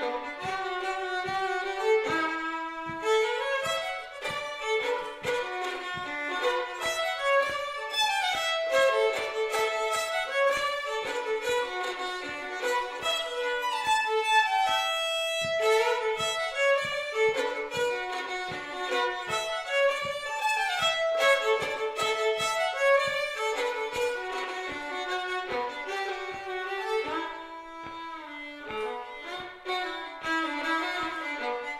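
Solo fiddle playing a slowish trad-style reel in D: a steady stream of quick bowed notes with a longer held note about halfway through.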